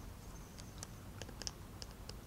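Faint, scattered clicks of small plastic Lego minifigure parts being handled, as a hairpiece is fitted onto a minifigure head; about half a dozen light ticks.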